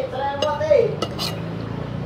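Metal spoons and forks clinking and scraping on china plates and bowls as people eat, with a few sharp clinks in the first second and a half. In the first second a short pitched, voice-like sound falls in pitch and is the loudest thing heard.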